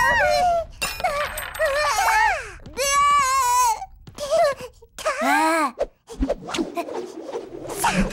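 Cartoon characters' wordless gibberish voices, whining and wailing in dismay in several short cries that slide up and down in pitch.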